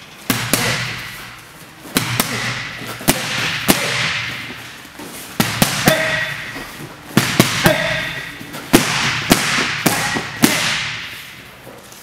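Boxing gloves and kicks smacking against focus mitts, sharp slaps at irregular intervals, often in quick combinations of two or three, each ringing out in a reverberant gym hall.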